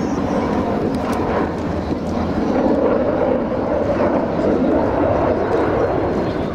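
Twin Saturn AL-31FP turbofans of a Sukhoi Su-30MKM fighter heard from the ground as it manoeuvres overhead: a loud, steady jet noise that swells slightly about halfway through.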